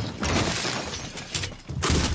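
A room being trashed: a dense run of crashing and clattering as objects are smashed and knocked about. A loud crash comes just before the end, as an office chair topples over.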